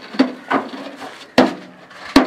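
Fired clay bricks knocking and clinking against each other as they are set down on a stack: three sharp knocks, the loudest about one and a half seconds in.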